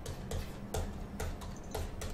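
Computer mouse clicking: a string of light, irregular clicks, one for each pen stroke as letters and exclamation marks are drawn in a paint program.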